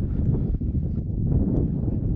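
Wind buffeting the microphone: a loud, uneven low rumble.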